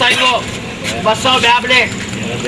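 Speech: short phrases of talking in bursts, over a steady background noise.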